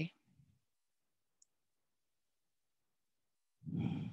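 Near-silent room tone with one faint click about a second and a half in. Near the end a soft, breathy vocal sound from the speaker starts, with no words, and fades out.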